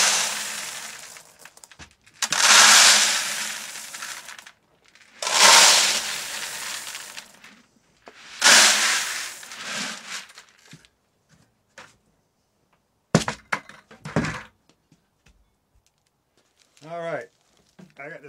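Dried pinto beans poured into empty plastic five-gallon buckets: four pours of about two seconds each, each loudest at the start and tailing off. A few short knocks follow a few seconds later.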